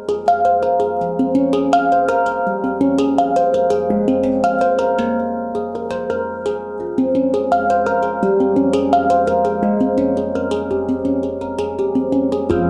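Mini handpan by Leaf Sound Sculptures, with an F2 centre note, played with the fingertips: quick, continuous runs of struck notes, each ringing on and overlapping the next.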